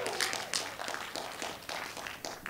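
Scattered hand claps from a small crowd, thinning out and growing fainter.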